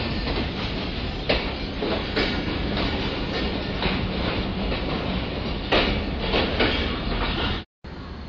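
Pakistan Railways passenger coaches rolling slowly past a platform as the train pulls in, with a steady rumble of wheels on rails and a few sharp clacks from the running gear. The sound cuts off suddenly just before the end.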